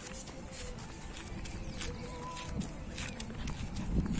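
Footsteps of a few people walking on a road, irregular crisp steps a couple of times a second over a low rumble.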